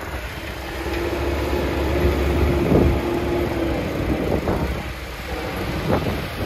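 Farm tractor's diesel engine running steadily, with a steady whine heard in it for the first few seconds.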